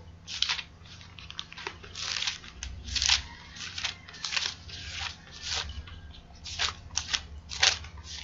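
Pages of a paper Bible being leafed through to find the next passage: a quick run of short paper rustles and flicks, roughly two a second. A faint steady hum runs underneath.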